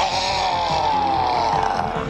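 Cartoon monster's long, distorted roar that slides slowly down in pitch, over a noisy transformation sound-effect bed.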